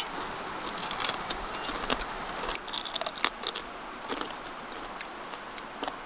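Cooked crab being broken apart and eaten by hand: scattered crackles and crunches of shell in a few short clusters, the sharpest snap about three seconds in.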